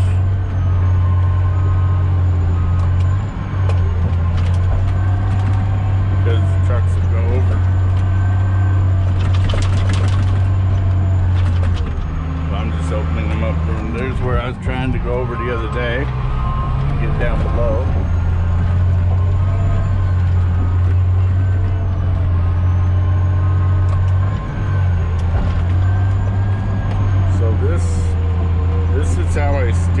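Caterpillar D10T dozer's V12 diesel running, heard from inside the cab as a steady deep drone. The engine note changes for a few seconds around the middle. Scattered metallic clanks are heard from the machine working, most around a third of the way in.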